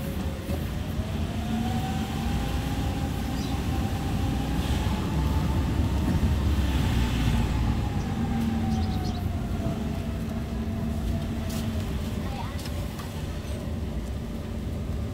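Car driving slowly, its engine and tyre rumble heard from inside the cabin, with a whine that rises in pitch over the first few seconds and falls away again in the second half.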